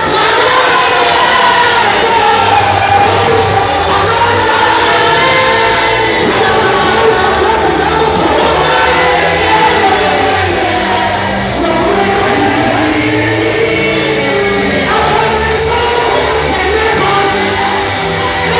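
Loud church worship music with many voices singing together over a steady bass line.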